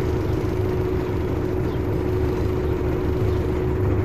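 Diesel engine of a bus running at low speed, heard from inside the cabin: a steady low rumble with a constant hum above it.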